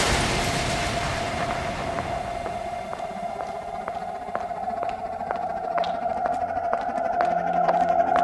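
Breakdown in an electro house DJ mix: a noise wash fades away after a heavy hit, leaving a steady held synth tone over light ticks about two a second. The ticks grow louder toward the end as low bass notes come back in.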